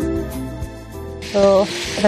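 Background music with plucked notes, which about a second in gives way to the steady sizzle of chicken in masala frying in a pan on a gas hob.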